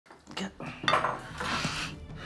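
Cutlery and crockery at a breakfast table: a few sharp clinks in the first second, then a longer, noisier scrape near the end.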